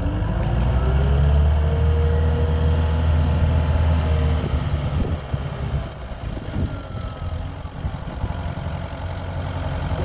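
Takeuchi TL10V2 compact track loader's diesel engine running, working harder with a rising whine for the first four or so seconds as the lift arms raise the bucket. It then settles to a lighter, steadier run, with a few knocks from the loader about halfway through.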